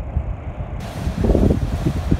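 Wind buffeting the microphone in a low, uneven rumble, over sea water washing against a stone harbour wall.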